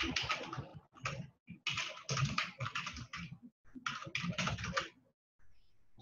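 Typing on a computer keyboard: quick runs of keystrokes broken by short pauses, stopping about a second before the end.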